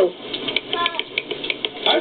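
Rapid, irregular clicking from a plastic toy gun being worked, about eight to ten clicks over a second and a half, with a brief voice part-way through.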